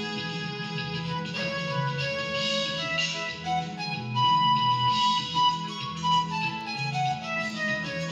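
Electronic arranger keyboard: a single-line melody solo played by the right hand over a steady repeating bass accompaniment, with a long held high note about four seconds in and a stepwise falling run near the end. It is a solo improvised on the major scale.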